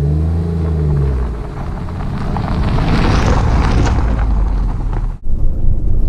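Jeep Renegade's 1.0-litre three-cylinder petrol engine running as the car drives toward the camera on a gravel road. Its tyre and gravel noise then grows louder as it comes close, and the sound cuts off abruptly about five seconds in.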